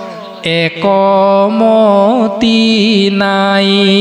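A man chanting a devotional verse in a slow, drawn-out melody through a microphone and PA. He holds long notes with gentle bends in pitch, with a short break for breath about half a second in.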